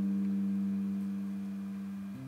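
A single sustained guitar note ringing out and slowly fading, smooth and almost free of overtones.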